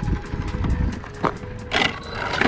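Brushless 1/10-scale RC drag car driving slowly, its tyres rolling and crunching over gritty asphalt and concrete. There are two short scraping knocks in the second half, under light background music.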